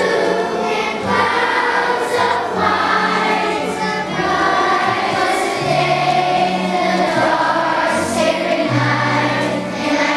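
A children's choir of fourth graders singing together over an instrumental accompaniment with a bass line of held low notes.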